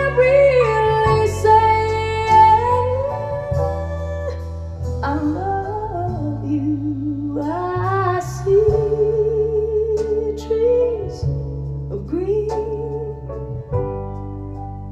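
Recorded ballad: a female voice sings long, gliding notes with vibrato over an instrumental accompaniment with a steady deep bass.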